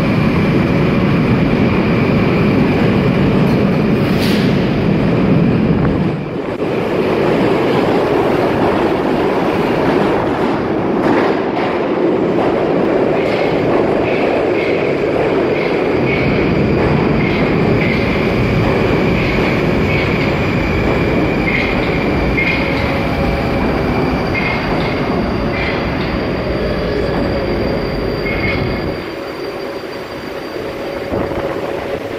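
New Moscow metro train pulling out of the station and running along the platform, a loud, steady rumble of wheels on rails and running gear, with a high wheel squeal that comes and goes in the second half.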